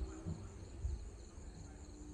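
Crickets chirping in a high, fast pulsing trill, with a low uneven rumble underneath.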